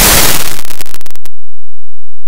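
Heavily distorted, clipped logo-effects audio: a harsh, very loud static-like noise that breaks into rapid stuttering pulses and cuts off suddenly a little over a second in, followed by silence.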